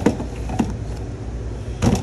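A few short knocks as tools are handled on a metal workbench and an air impact wrench is picked up, the loudest near the end, over a steady low hum.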